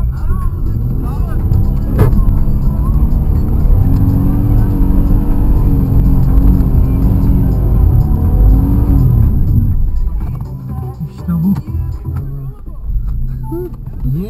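Suzuki Vitara engine working hard, heard from inside the cabin as the 4x4 drives over a rough snowy track. The engine runs loud and steady, then eases off about ten seconds in.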